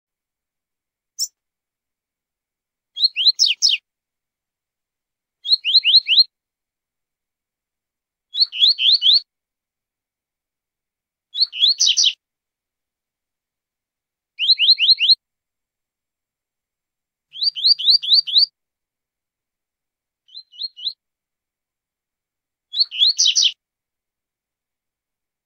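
Double-collared seedeater (coleiro, papa-capim) singing its 'tui-tui zel-zel' song. Each phrase is four to six quick, high, descending notes, and the phrase comes back about every three seconds, eight times, with silence between.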